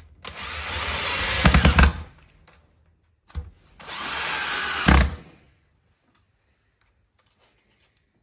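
Cordless drill-driver driving screws through a steel lathe faceplate into a wooden blank, in two runs of about two seconds each. Each run ends in a few low knocks.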